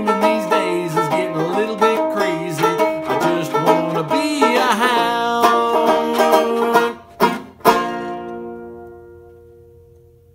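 Banjo strummed under a man's singing voice for the first few seconds, then two final strums, the last chord ringing out and fading away as the song ends.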